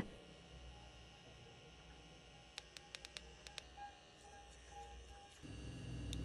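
Near silence, with a quick run of about eight faint clicks a little past the middle.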